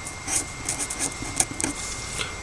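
Felt-tip marker scratching on paper in a series of short strokes while writing.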